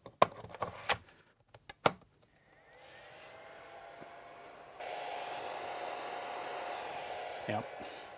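Plastic clicks and knocks as an 80V Greenworks battery is seated on its charger, then the charger's cooling fan spins up with a rising whine and runs with a steady whir and hum, stepping louder about five seconds in.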